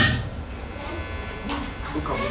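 A steady low electrical hum and faint buzz from the microphone and sound system, heard under a pause in a man's speech; his voice trails off at the start.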